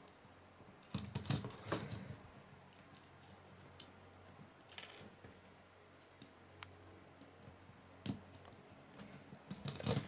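LEGO plastic pieces clicking and rattling as small flame elements are handled and pressed onto a brick model: a scattering of light clicks, busiest in the first two seconds and again around eight seconds in.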